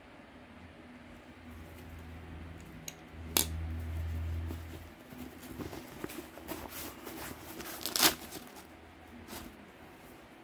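Handling noise from folding knives and a foam-lined hard case: a low rumble, then a run of small clicks and knocks. Two sharper clicks stand out, one about a third of the way in and a louder one near the end.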